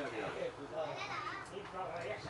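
Background voices of young players and onlookers calling out, overlapping and indistinct, with no single clear shout.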